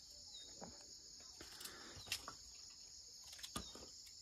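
Faint, steady high-pitched chirring of an insect chorus, with a few short clicks and scrapes of a knife cutting food over a metal plate.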